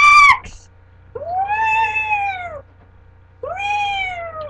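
Drawn-out meows: a short, loud high-pitched one right at the start, then two long ones, each rising and then falling in pitch, the second still going at the end.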